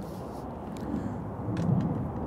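Outdoor background noise between sentences: a steady low rumble with a few faint ticks.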